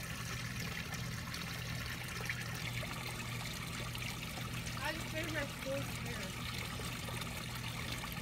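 Steady trickle of running pond water, with a low steady hum underneath.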